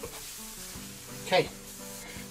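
A steady hiss over background music, with one short vocal sound about one and a half seconds in.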